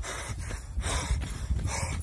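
A man panting hard while running, with quick, loud, noisy breaths. Breathing this hard is the sign of running faster than the right pace.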